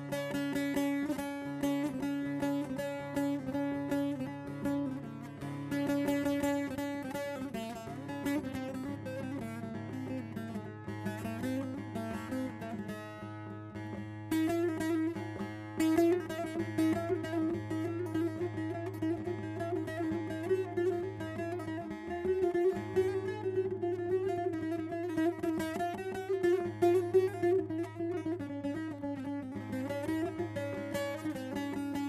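Solo bağlama (saz) playing the instrumental introduction to a Turkish folk song (türkü): rapid plucked and strummed notes ringing over steady low drone strings, the melody climbing to a higher register about halfway through.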